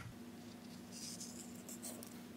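Faint scratching and rubbing of small objects being handled, over a low steady hum.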